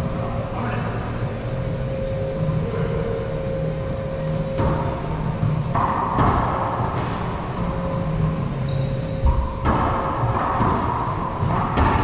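Racquetball rally: several sharp cracks of the ball off racquets and the court walls, spaced a second or more apart, each ringing briefly in the enclosed court.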